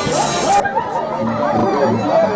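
Festive band music with bright cymbals cuts off suddenly about half a second in. Then people chatter over the regular low bass notes of a brass band.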